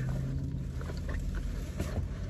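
Low steady rumble inside a car cabin, with a few faint rustles and ticks from denim jeans being handled.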